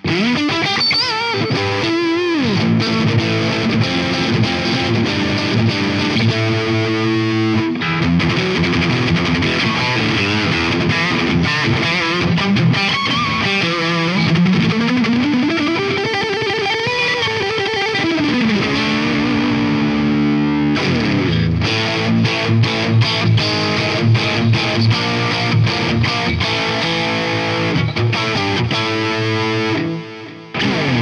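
G&L Tribute Legacy single-coil electric guitar played through heavy, metal-style distortion. About halfway through come long sweeping pitch slides, and later in the passage it turns to a run of fast, tightly picked notes.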